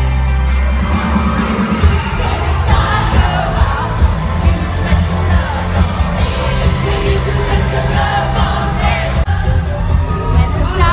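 Live pop band playing in an arena with a singer and a heavy, pounding bass beat, picked up loud on a phone microphone in the crowd, with crowd noise under it.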